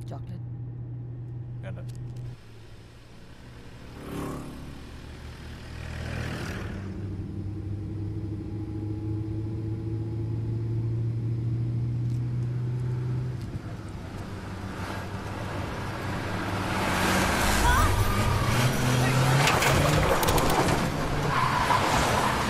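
Car engine and road noise of a car being driven at speed, with two vehicles passing by about four and six seconds in. The engine and road noise grow louder over the last several seconds.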